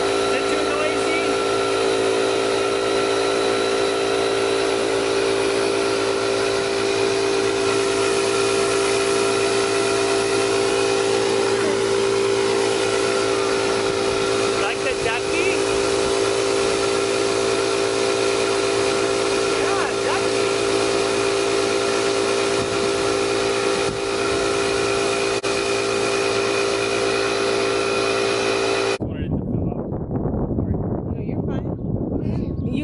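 Air compressor running steadily, with compressed air hissing through a coiled hose into a large inflatable pool float as it fills. The sound stops abruptly near the end.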